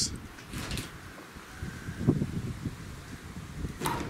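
Footsteps and rustling of someone moving about handling a camera: a cluster of low, irregular thuds about two seconds in, with short hisses near the start and the end.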